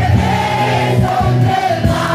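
Loud amplified live band music with a steady bass and drumbeat, and several voices singing the melody together.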